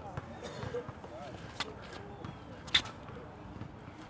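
A basketball bouncing twice on an outdoor court as a player dribbles, the second bounce the louder, over faint crowd chatter.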